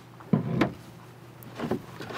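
Recycled-plastic trailer jack blocks being lifted out of their box and stacked, with a clunk about a third of a second in and a lighter knock near the end.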